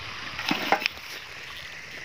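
Three light clicks in quick succession about half a second to one second in, from a hand working at the fuel tank cap of a small petrol water-pump engine, over a steady faint hiss.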